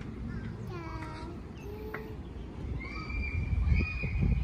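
A toddler's short, high, meow-like cries, with two long, steady high squeaks near the end, over a constant low rumble of wind on the microphone.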